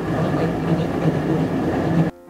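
Flour mill machinery running steadily: a low hum under a dense, even clatter from the grain sifter as it separates flour from husks.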